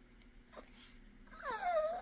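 Yorkshire terrier giving a single drawn-out whine that falls in pitch, starting about a second and a half in.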